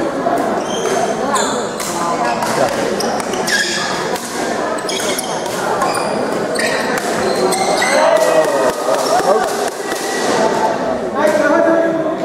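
Doubles badminton rally: rackets hitting the shuttlecock in a string of sharp strikes at irregular intervals, along with players' footfalls on the court floor, under background chatter echoing in a large gym hall.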